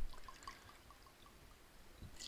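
Vodka poured from a bottle into a small jigger: a faint trickle with a quick run of small glugs, dying away after about a second and a half.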